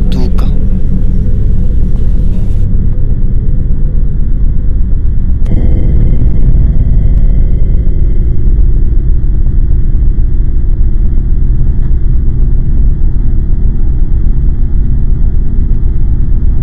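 A loud, steady low rumbling drone, a suspense sound bed laid under the scene. A thin high hum joins it about five seconds in.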